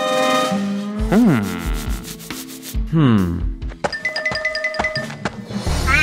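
Cartoon sound effects and music: a ringing chime dies away, then two falling swoops come about two seconds apart, followed by a quick run of evenly repeated short notes.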